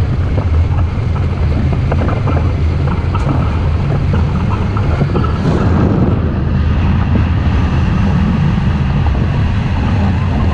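Steady, loud wind rushing over a GoPro action camera's microphone on a hang glider in flight, heavy in the low rumble.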